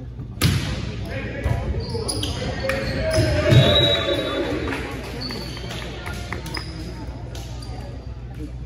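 A volleyball struck hard about half a second in, with a second hit about a second later, then a burst of shouting from players and spectators in a gymnasium. Near the end the ball bounces on the gym floor amid chatter.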